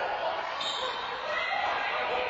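Several people's voices talking across a large, echoing indoor court.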